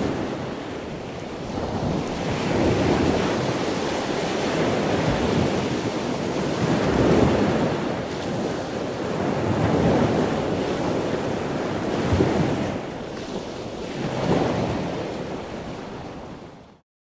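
Ocean surf: waves washing in, the rush swelling and fading every few seconds.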